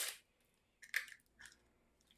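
Light handling noises from a lens case and its wrapping being worked by hand: a sharp rustle at the start, then two brief crisp scrapes about a second in and a little after.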